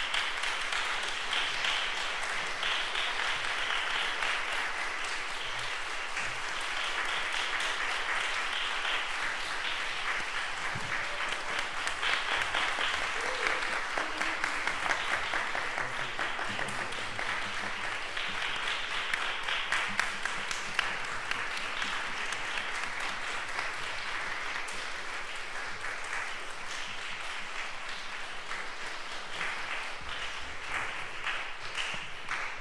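Audience applauding, a dense, steady clapping.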